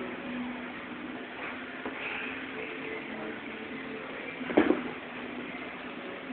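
A body thudding onto a padded mat in a grappling takedown: one heavy thud about four and a half seconds in, over steady gym background noise.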